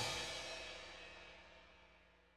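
The end of a goregrind track: the band's last hit, cymbals with a sustained chord, ringing out and fading away within about a second.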